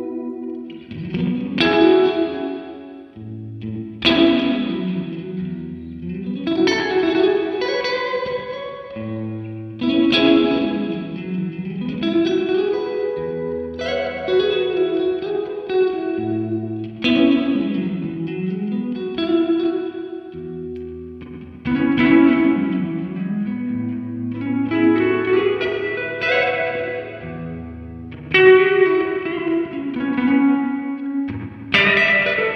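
An electric guitar, a Fender Stratocaster, played through a Subdecay Super Spring Theory spring reverb pedal into a Fender Deluxe Reverb amp. It plays clean chords and phrases struck every two to three seconds, each ringing out into a long spring reverb tail.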